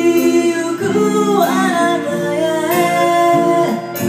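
A live band playing a pop-rock song: a lead singer's melody over electric guitars, bass and drums, with cymbal hits.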